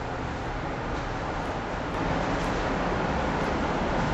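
Steady rushing noise, like moving air or machinery running, a little louder from about halfway through.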